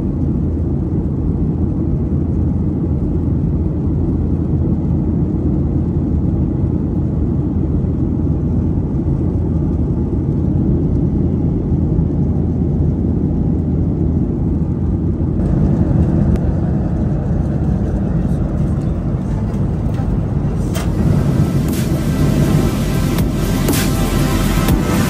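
Steady low drone inside a Boeing 737 airliner cabin in flight: engine and airflow noise heard through the fuselage. It grows a little brighter about two-thirds of the way through and hissier near the end.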